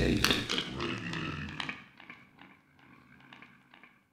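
The end of an electronic dub track: the full mix dies away over the first two seconds, leaving only faint, regular clicks about four times a second.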